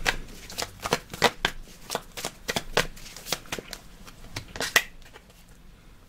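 A deck of tarot cards being shuffled by hand: a quick, uneven run of card snaps and flicks that stops about a second before the end.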